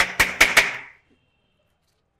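Thin wooden canes struck sharply against a hard surface, about four quick cracks in the first second, then silence.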